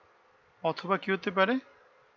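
A man's voice saying a short phrase of about a second, after a brief pause, over a faint steady hum.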